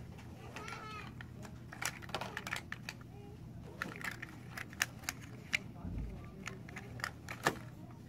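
Irregular clicks and taps of fingers handling the phone close to its microphone, over a steady low hum.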